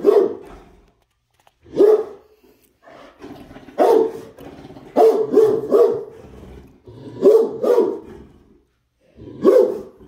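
Great Dane barking: about eight deep barks, some single and some in quick runs of two or three, with short pauses between.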